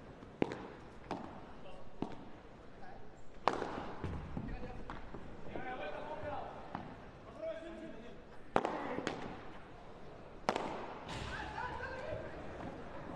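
Padel ball struck back and forth with padel rackets in a rally, a string of sharp pops at irregular intervals, some louder than others.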